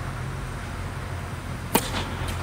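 A tennis racket strikes the ball once, a slice serve, with a single sharp crack near the end. A steady low hum runs underneath.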